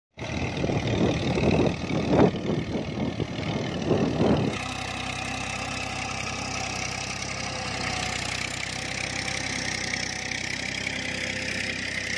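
Tractor diesel engine running under load while pulling a reversible mouldboard plough through the soil. It is louder and rougher for the first four seconds or so, then settles into a steady, even running note.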